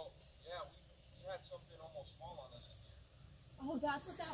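Night insects trilling in one steady high tone, with faint hushed voices.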